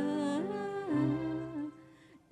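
A woman singing live into a microphone, holding long notes that slide from one pitch to the next, over sustained chords of the backing band. The music drops away sharply near the end.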